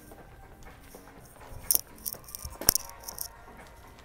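Faint background music, with a few sharp clicks and clinks in the second half.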